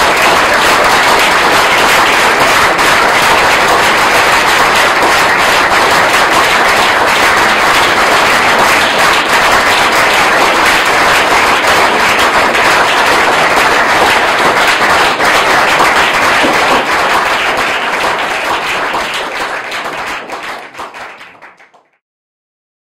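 Audience applauding: many hands clapping steadily, dying away over the last few seconds.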